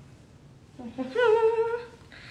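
A woman's voice drawing out a single long, sing-song "okay" with a hum-like, held pitch, lasting about a second and starting just under a second in, over faint room tone.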